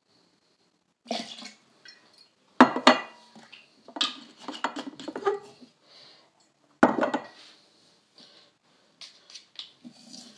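Glass liquor bottles and a metal cocktail shaker clinking and knocking on a granite countertop: two sharp knocks, about two and a half seconds and seven seconds in, among lighter clinks and taps.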